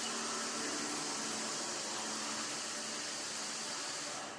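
Steady hiss of background room noise with a faint low hum underneath.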